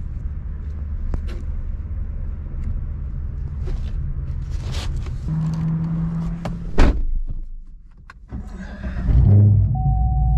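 Chevrolet Camaro being boarded: clicks of the door and handle over a steady low rumble, and a car door shutting with a heavy thunk about seven seconds in. After a brief quieter moment, the engine starts near the end and runs with a low rumble, followed by a short chime tone.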